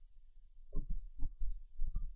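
Several soft, low thuds in quick succession in the second half, over a steady low hum.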